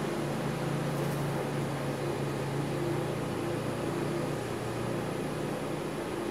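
Steady background hum and hiss, with a low droning tone and no other events: the room's constant machine noise.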